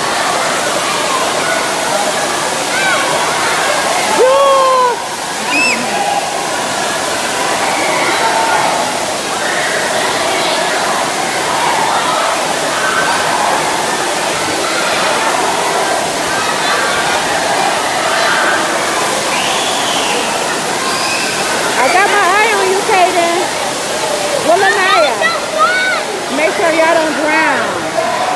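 Indoor pool hubbub: a steady rush of water pouring and splashing from play-pool spray features, mixed with many children's voices shouting and calling, growing busier near the end.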